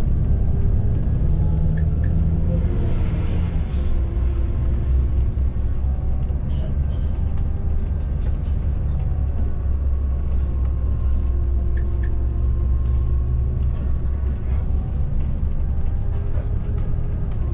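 Volvo B9R coach running along the highway, heard inside the driver's cab: a steady low drone from the diesel engine and drivetrain, with road and tyre noise over it.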